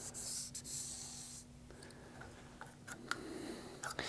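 Marker pen drawing along a fibreglass-faced bow limb, marking the line where the limb's width will be cut down: a faint scratchy stroke for about the first second and a half. A few light handling clicks follow near the end.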